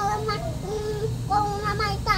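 A young girl singing in a high voice, a short sing-song phrase with a few held notes.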